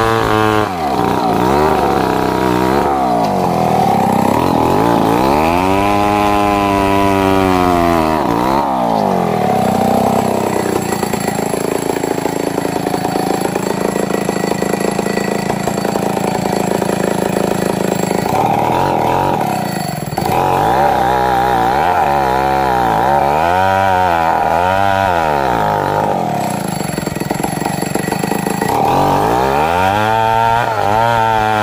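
Two-stroke chainsaw ripping a wadang log lengthwise. The engine revs up and down repeatedly, then holds steady at full speed through long stretches of the cut, with a brief drop in revs about two-thirds of the way through.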